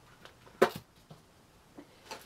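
A single light knock about half a second in as a miniature cabinet is set down on a craft desk, with a few faint handling taps around it.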